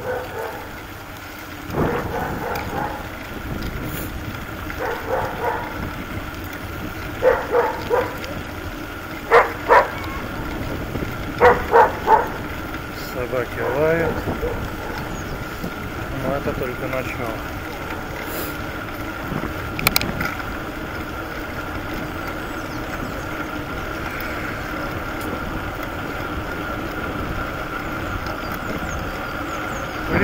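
Steady wind and road noise from riding a bicycle along an asphalt road, with several short snatches of voices in the first half.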